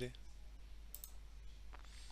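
Quiet room tone with a steady low hum and one short, faint click about halfway through.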